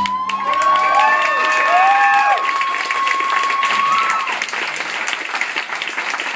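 Audience clapping throughout. Whistles and whoops sound over the clapping for the first four seconds or so.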